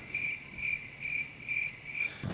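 Cricket chirping sound effect, a high steady chirp that pulses about twice a second, used as the comic awkward-silence gag after a joke falls flat.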